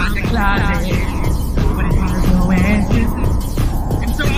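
A man singing a slow, wavering melody over backing music, with a steady low hum underneath.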